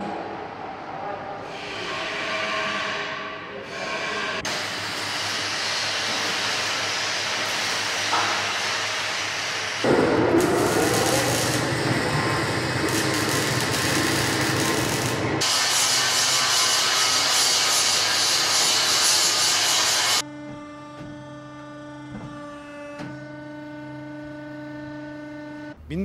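Factory workshop noise cut together from several shots: loud, steady machinery and metalworking noise that changes abruptly every few seconds, loudest in the middle, then a quieter steady machine hum with several held tones in the last few seconds.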